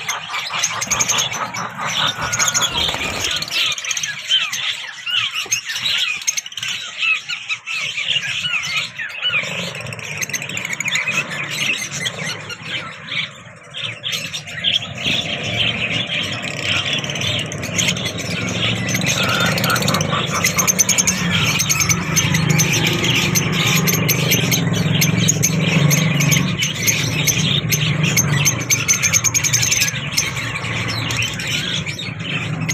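A cageful of peach-faced lovebirds chattering, a constant stream of high-pitched squeaks and chirps. From about halfway a lower background rumble runs underneath.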